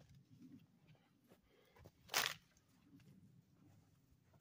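A dry, dead cedar branch snapping once, about two seconds in, as it is broken off by hand, amid faint rustling of branches.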